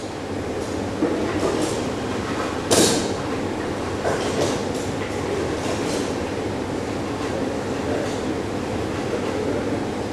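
Steady mechanical rumbling noise with a few sharp clacks over it, the loudest a little under three seconds in.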